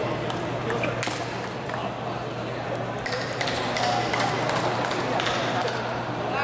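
Table tennis rally: the ball clicking off paddles and the table in a string of sharp, short taps, over a background of voices.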